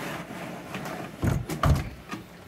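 The latch handle on the Sol-Ark 5K inverter's metal case door being worked. It gives two dull thumps less than half a second apart, a little over a second in.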